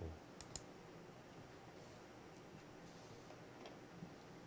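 Near silence, with two quick faint clicks about half a second in: a computer mouse clicking to place stones on a digital Go board.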